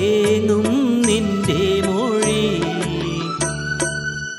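A man singing a Malayalam film song into a handheld microphone, with long held notes bent in smooth ornaments, over instrumental accompaniment with a steady bass and light percussion.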